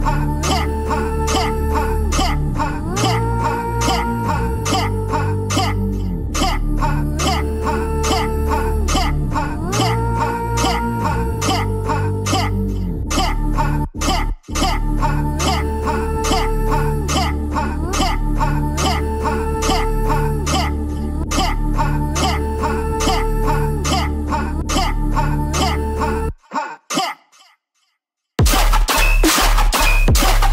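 Dubstep track playing back from an Ableton Live session: heavy bass and synth notes that bend up and down in pitch over a steady drum beat. It cuts out briefly about 14 seconds in and stops near the end.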